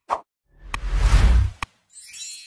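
Sound effects of an animated subscribe-button graphic: a short pop as a button is clicked, then a swelling whoosh with a deep low boom and two sharp clicks, and a shimmering high chime that begins near the end.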